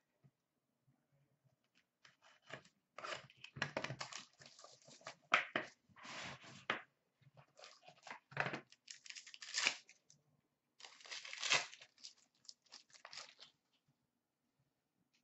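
Packaging of a 2016-17 Upper Deck Ultimate hockey card box being torn open by hand. It comes as a string of irregular tearing rips and crinkles, starting about two seconds in.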